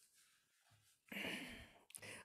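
Near silence, then a man's audible breath of about two-thirds of a second, starting about halfway through, followed by a faint mouth click just before he starts to speak.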